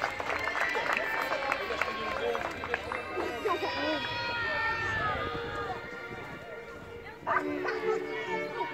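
A group of young children talking and calling out over one another. About seven seconds in it gets suddenly louder, with held notes.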